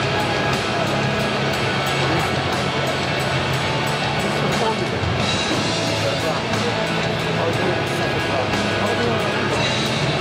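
Rock music with a steady bass line playing over an arena's loudspeakers, with voices mixed in behind it.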